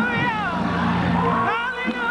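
High-pitched, wavering vocal cries, one trailing off near the start and another rising about a second and a half in, over steady church music with a low sustained tone.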